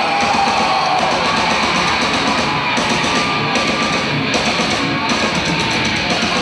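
Heavy metal band playing live at full volume: distorted electric guitars over a drum kit, a dense and steady wall of sound.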